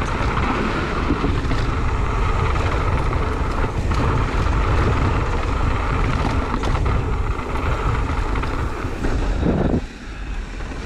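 Wind buffeting the microphone of a camera on a mountain bike descending a dirt trail, with the tyres rolling over dirt and the bike rattling and clicking over bumps. The rushing noise eases slightly just before the end.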